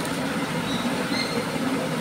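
Steady background noise, an even hiss with no distinct events.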